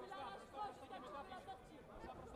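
Indistinct background chatter of several voices echoing in a large sports hall.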